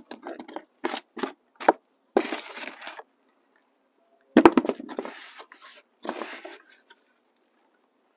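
Hands working damp potting mix into a planter: a quick run of short crackles and scrapes, then stretches of scraping and rustling. A thump about four and a half seconds in is the loudest sound.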